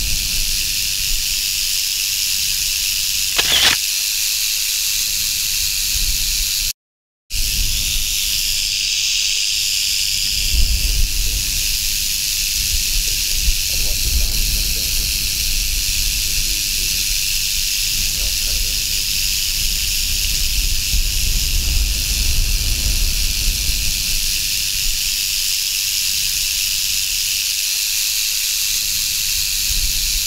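Rattlesnake rattling: a steady, dry, high buzz with a brief dropout about seven seconds in.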